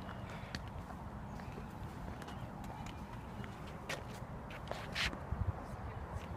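A few light, scattered clicks and knocks over a steady low outdoor rumble, the loudest about five seconds in.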